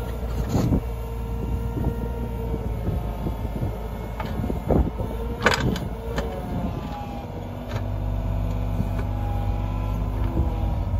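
John Deere 35G compact excavator's diesel engine running under the hydraulics while the bucket digs a test hole in soil, with a whine that shifts in pitch as the arm moves. Several sharp clanks come through, the loudest about halfway in, and the engine grows louder near the end.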